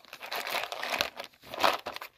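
Plastic crinkling and rustling from a clear plastic organiser box of heat-shrink solder connectors being handled and turned over, with louder rustles about a second in and near the end.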